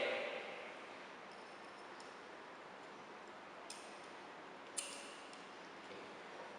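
A few small, sharp clicks from hands working a light microscope's stage and objectives: two plainer ones near the middle and fainter ticks before them, over a low steady room hiss.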